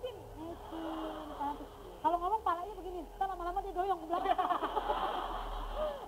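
Indistinct talking: voices speaking continuously, not clear enough to make out the words, with a short pause about two seconds in.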